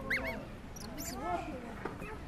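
Baby macaque crying: a run of short, squeaky calls that rise and fall in pitch, overlapping one another.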